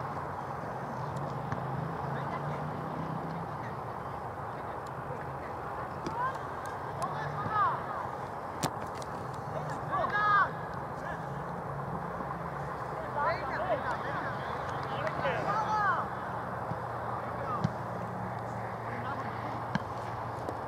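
Distant shouts and calls of football players on an open pitch during play, coming in short bursts several times over a steady background hiss. A single sharp knock sounds about eight and a half seconds in.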